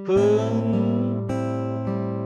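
Steel-string acoustic guitar fingerpicked in a slow arpeggio, single notes ringing over one another. A man's voice sings a held, slightly falling note along with it near the start.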